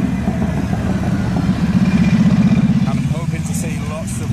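An engine running steadily close by, a low pulsing rumble that swells a little about halfway through, with faint voices near the end.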